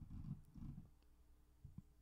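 Near silence: room tone at the microphone, with a faint low murmur in the first moment and two faint ticks near the end.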